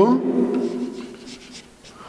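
Marker pen writing on a whiteboard in short strokes as a word is written.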